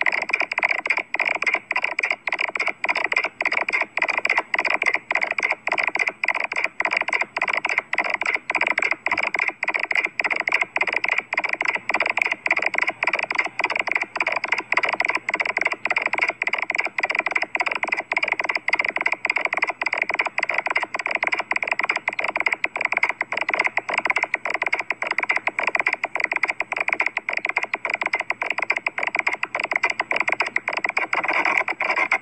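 Harsh, heavily distorted logo audio from a stacked 'G Major' pitch-and-chorus effects edit. It is a continuous screechy, buzzing sound cut by short dropouts two to three times a second.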